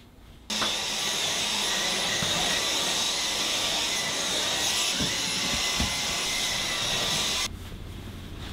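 Stick vacuum cleaner running steadily over the floor, a whir with a high whine, switched on about half a second in and cut off suddenly near the end.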